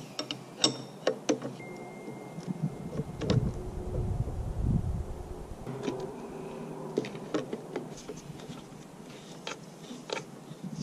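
Metal wrenches clicking and clinking against the fuel-line fitting of an aircraft engine's fuel filter as it is loosened, with a few sharp clicks in the first second and more near the end, and a low rumble in the middle.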